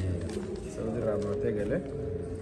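A person's voice, with a steady held note that comes in about a second in.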